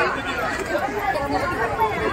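Crowd chatter: several people talking at once, indistinct overlapping voices.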